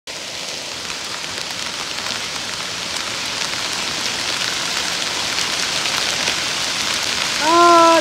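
Hail and heavy rain pelting an asphalt-shingle roof: a steady hiss dotted with many sharp ticks of hailstones striking, building slightly louder. A voice begins just before the end.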